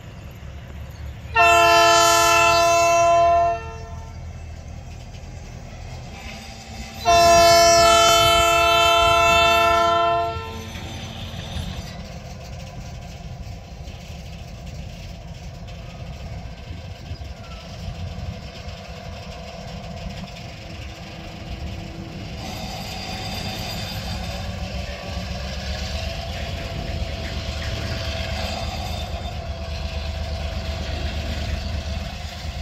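EMD GR12W diesel locomotive sounding its chime air horn in two long blasts of about two and three seconds, a few seconds apart, as it sets off with a loaded freight train. Between and after the blasts its diesel engine runs, growing louder and rising in pitch near the end as it picks up power.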